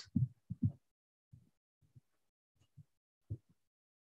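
Faint, short low thumps, about eight of them at uneven intervals, with near silence between.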